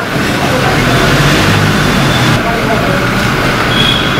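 Toyota Innova SUV running as it drives off, with steady vehicle noise and background voices.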